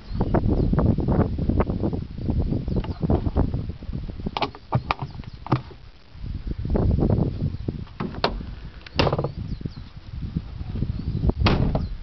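A few sharp knocks and clicks from the van's doors and fittings being handled, over an uneven low rumble.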